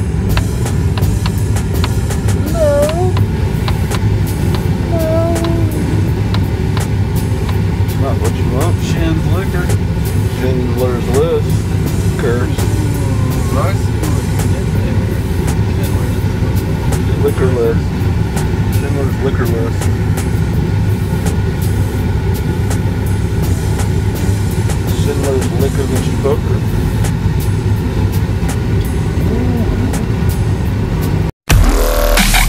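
Cargo van running, a steady low rumble heard from inside the cabin.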